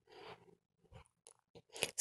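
Faint, soft scraping and rustling of a wooden spatula stirring cooked rice in a metal pot, in a few short strokes.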